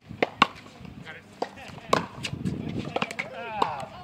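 Pickleball rally: sharp pocks of paddles striking the hard plastic ball, a string of about seven hits at irregular spacing, with voices faint near the end.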